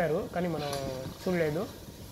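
A person talking in short phrases; no train sound stands out above the voice.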